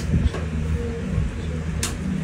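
Steady low mechanical hum, with a single sharp click near the end.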